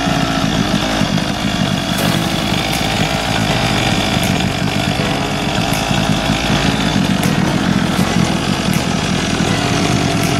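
Small 50 cc two-stroke single-cylinder engine of a motorised penny-farthing bicycle running steadily at idle, with no revving.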